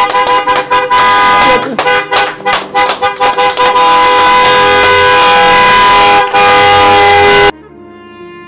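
Car horns honking: a string of short honks over the first few seconds, then one long unbroken blast that cuts off suddenly near the end.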